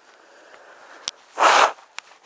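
A sharp click, then a short rustling scrape lasting about a third of a second: handling noise from the handheld camera as it is swung about.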